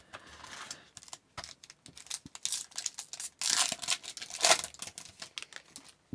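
A 2022-23 Upper Deck Extended Series hockey card pack is pulled from its hobby box and torn open, the wrapper crinkling and ripping with many small clicks. The loudest rips come a little past the middle.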